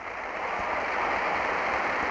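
A large crowd applauding in a big hall, the applause swelling over the first second and then holding steady.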